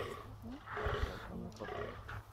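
A rutting fallow deer buck groaning, a rough, deep call loudest around the first second.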